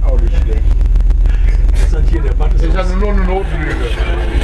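Steady low rumble inside a passenger train carriage, with people talking over it.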